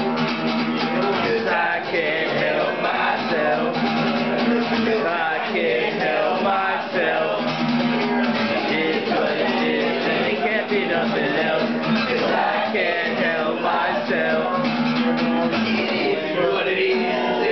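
Live acoustic guitar music, the guitar strummed steadily through the song.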